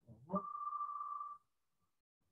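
A short electronic tone: a quick rising glide into a steady high beep held for about a second, which then stops abruptly.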